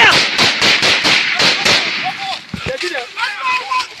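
Rapid rifle gunfire in a firefight: many shots in quick succession, dense for about the first two seconds and then thinning out, with men shouting.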